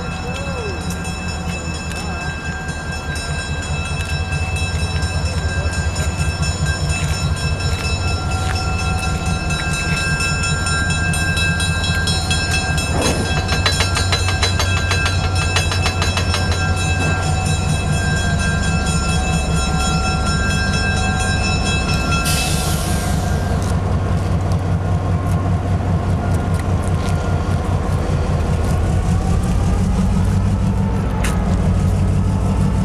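Sacramento Northern 402 diesel switcher locomotive running as it creeps out of the roundhouse, its engine drone pulsing steadily and growing louder as it nears. A run of clicks comes midway as the wheels cross rail joints, and a short burst of air hiss follows about two-thirds through.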